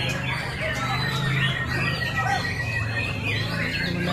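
Several caged songbirds, among them white-rumped shamas (murai batu), singing over each other in a dense mix of whistles, trills and chatter, with one long steady whistle about a second in. A low steady hum sits underneath.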